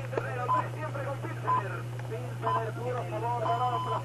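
Low-level speech from the radio programme, over a steady low hum.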